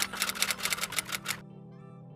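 Typewriter sound effect clicking rapidly, about ten keystrokes a second, over soft background music; the clicks stop about one and a half seconds in, leaving the music alone.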